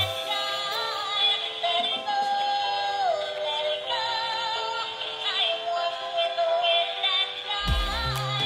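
A battery-powered dancing doll's built-in speaker playing an electronic tune with a synthetic singing voice. The deep bass drops out for most of the tune and comes back near the end.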